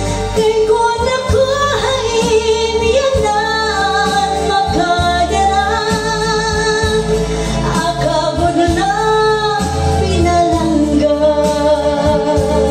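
A woman singing a Waray-language song into a handheld microphone over an instrumental backing track with a steady bass line.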